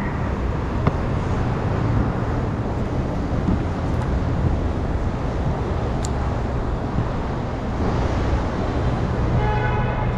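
City street traffic noise: a steady low rumble of passing vehicles, with a single sharp click about a second in.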